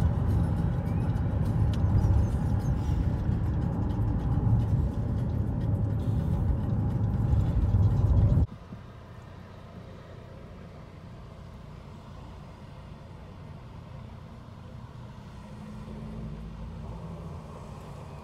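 Loud low rumble of a moving vehicle's road noise. It cuts off abruptly about eight seconds in, giving way to a much quieter, steady hum of street traffic.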